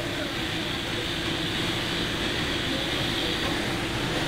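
Steady running noise of stone-cutting workshop machinery: an even low hum with a hiss above it.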